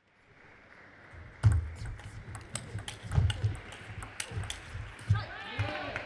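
Table tennis rally: the plastic ball makes sharp clicks off the rackets and table at roughly two per second, starting about a second and a half in, with low thuds underneath. A voice calls out near the end as the point finishes.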